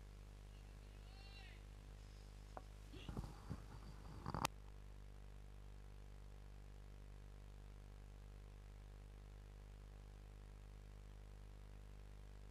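Near silence: a steady low electrical hum. Between about three and four and a half seconds in there is a brief faint murmur that ends in one sharp click, after which only the hum remains.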